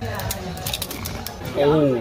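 A fried chip crunching as it is bitten and chewed: a quick run of crisp cracks over about the first second.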